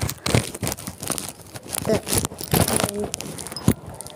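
Irregular rustling and crackling with sharp clicks, handling noise of a phone rubbing against its microphone.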